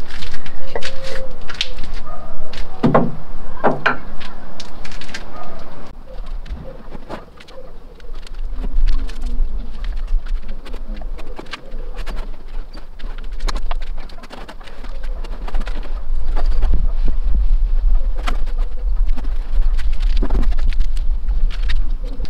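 A bird calls now and then from the garden, over scattered small taps and scrapes as filler is worked by hand into the seams of a plywood boat hull. A low rumble comes in about six seconds in and runs under the rest.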